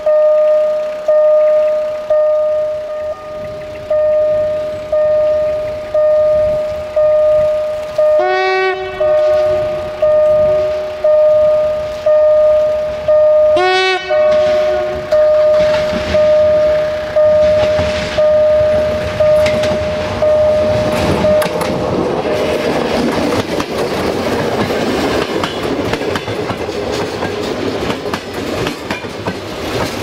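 A level-crossing warning bell rings steadily about once a second, while the approaching VT614 diesel multiple unit sounds two short horn blasts, about eight and fourteen seconds in. The bell stops a little past two-thirds of the way in, and the train's engine and wheels on the rails grow into a loud rumble as it passes close by.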